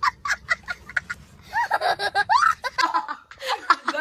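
A young child laughing hard: quick bursts of laughter, with a few high rising squeals about halfway through.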